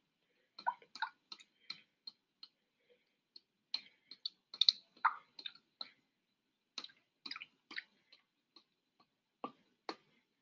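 Light, irregular clicks and ticks of a glass test tube being flicked and shaken by hand to mix the solution during a titration, spreading the pink phenolphthalein colour through the sample.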